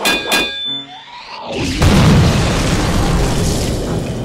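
Explosion sound effect: a loud boom starting about one and a half seconds in, with a long noisy tail, strongest in the low end. It follows a couple of short sharp sounds in the first half-second.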